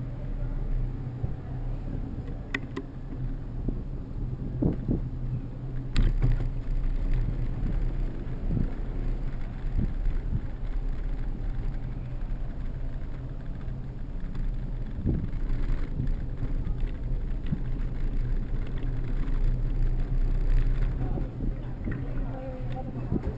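Ride-along sound of a bicycle on city streets: a steady low rumble of tyres and road vibration, broken by a few sharp knocks from bumps. The strongest knock comes about six seconds in, with a smaller one a few seconds earlier.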